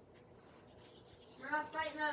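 Mostly quiet with faint light scratching, then a girl's voice starts about one and a half seconds in, a drawn-out sound that falls in pitch at the end.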